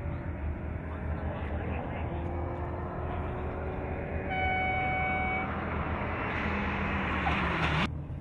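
Rally car engine running hard as the car approaches, growing louder over the second half, with its pitch falling just before a sudden cutoff near the end. A little after four seconds a steady horn-like tone sounds for about a second.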